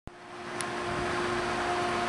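A click as the recording starts, then a steady hiss with a low mechanical hum that swells over the first second or so.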